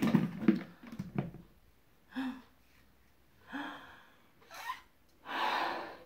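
A woman blowing up a rubber balloon: sharp breaths in and puffs of air into it, with the longest, loudest puff near the end. At the start, a few knocks as a plastic lid goes onto a bucket.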